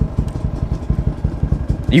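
Off-road motorcycle or ATV engine idling with a quick, slightly uneven pulse, about fifteen beats a second.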